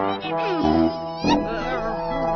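Orchestral background music with whining, cat-like sliding cries over it, about half a second in and again just past the middle.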